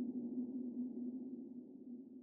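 Low, steady hum of a logo sound effect, slowly fading away.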